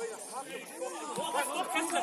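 Several voices shouting and calling out at once on a football pitch, overlapping one another.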